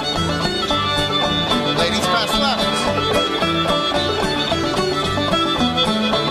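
A live string band plays a lively contra dance tune, with a fiddle leading over banjo and a steady bass-note dance beat.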